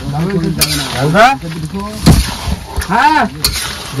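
A metal ladle stirring and scraping thick chicken curry with potatoes in a large metal kadai, with a few sharp clinks of the ladle against the pan. A voice is heard faintly at times.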